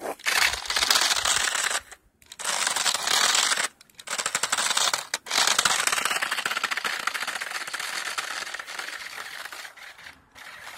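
RC car with screw-spiked tires driving in bursts of throttle, a fast rattling noise from its drivetrain and tires churning snow, cut by three short pauses. The last burst is the longest and slowly fades toward the end.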